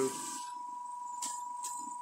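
A faint steady high-pitched tone, with a couple of light clicks past the middle.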